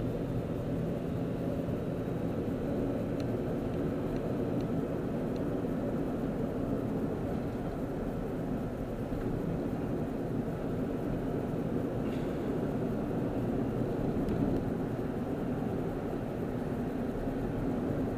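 A moving car heard from inside its cabin: a steady low drone of engine and road noise while driving.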